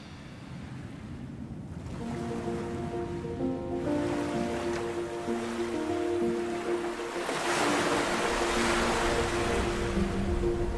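Waves washing onto a sandy beach under soft music with long held notes; the music comes in about two seconds in, and the surf grows louder about seven seconds in.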